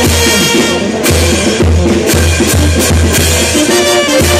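Military brass band playing a lively tune: trumpets over repeated deep sousaphone bass notes, with drums and hand cymbals crashing on the beat.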